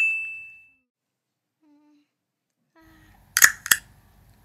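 A single bright ding that rings and fades within about a second. Then, near the end, two sharp clicks close together, in time with a toy ear-piercing gun being pressed to a doll's ear.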